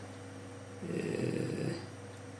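A man's low, rough vocal sound in the throat between phrases, a hesitation lasting about a second from about a second in.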